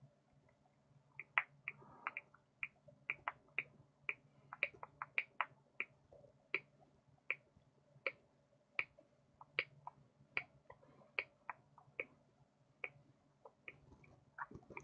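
Hex driver turning a small screw into a plastic part of an RC crawler kit: a run of light, sharp clicks, two or three a second, over a faint low hum.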